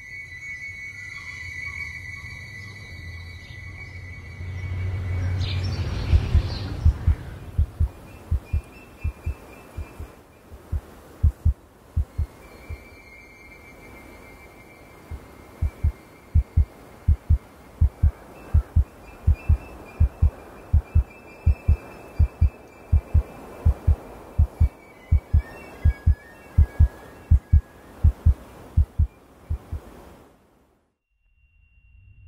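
Heartbeat sound effect: short low thumps in lub-dub pairs, starting about six seconds in after a swelling low hum and a held high tone. The beats pause briefly near the middle, then return at a steady pace.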